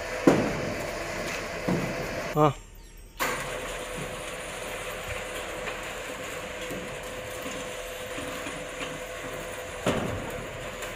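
Electric motor of a roll-up steel shutter running with a steady hum as the corrugated steel curtain winds up, the slats rattling. A few sharp knocks in the first two seconds, and the sound drops out briefly between about two and a half and three seconds in.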